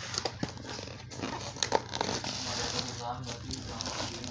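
Cardboard parcel and the plastic packaging inside it being pulled and worked at by hand: irregular crinkling, rustling and scraping as it resists opening.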